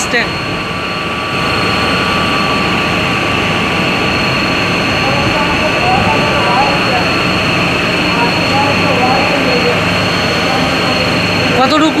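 Thermal oil boiler room machinery running: a steady, loud mechanical roar with a thin high whine over it.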